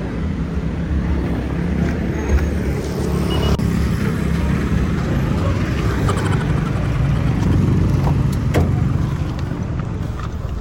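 Steady low rumble of motor vehicle noise, with a few light clicks in the second half.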